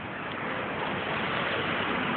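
Outdoor street noise: a steady rushing hiss with no distinct events, growing slightly louder.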